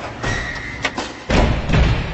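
Intro logo sound effects over music: a couple of sharp clicks just before a second in, then a loud, deep thud that rings on and slowly fades.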